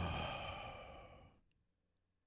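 A man's long sigh, a single exhale that starts loud and fades away over about a second and a half.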